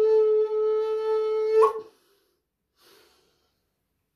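Native American-style double flute holding one long note, which jumps briefly up in pitch and stops just under two seconds in; a faint breath follows, then silence.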